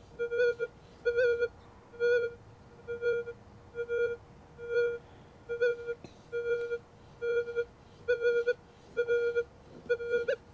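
Minelab Manticore metal detector with its M8 coil giving a repeated low, steady-pitched target tone, a short beep about every 0.8 s, as the coil is swept back and forth close over a tiny gold nugget of under a tenth of a gram. The beeps are its audio response to the nugget.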